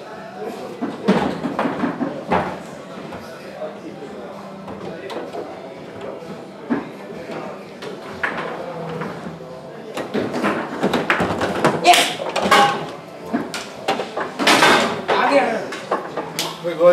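Foosball rally on a Rosengart table: sharp clacks of the ball striking the plastic men and table walls, and rods knocking against the bumpers. The clacks come in scattered knocks at first, then in a dense, louder flurry in the last six seconds. Voices murmur in the background.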